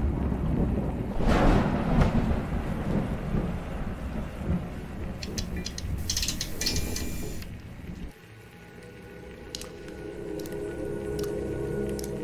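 Horror-film soundtrack: a deep boom with a long rumbling decay, like thunder, and a second boom about a second in, with a short burst of crackling around the middle. Near eight seconds the rumble cuts off suddenly and a quiet, steady music drone takes over.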